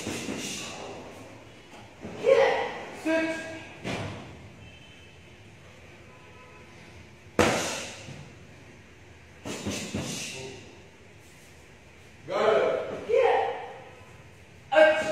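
Kicks and punches landing on a handheld kick shield: about five sharp slapping thuds at uneven gaps, the sharpest around the middle. Short, loud shouts come in two pairs, one early and one near the end.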